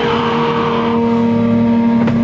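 Death metal band playing live, picked up by a camera microphone: a distorted electric guitar holds one steady, loud note with a dense low rumble under it and no clear drum strikes.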